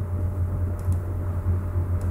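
Steady low background hum with a light hiss, with a couple of faint clicks.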